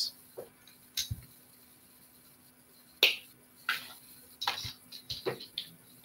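Light clicks and taps of a plastic ruler and copper beading wire being handled on a work surface. The sharpest click comes about three seconds in, with a few softer taps after it.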